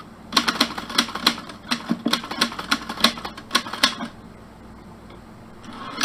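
Typewriter keys striking in a quick, slightly uneven run of clicks, about five a second, for nearly four seconds, then stopping.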